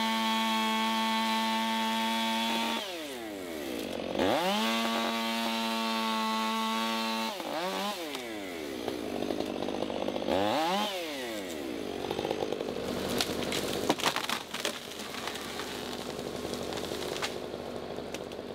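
Pole saw cutting a notch into an overhead limb: its motor revs to full speed and holds there for about three seconds, drops back, then revs and holds again. A short rev comes about ten seconds in, then quieter running with scattered clicks and knocks.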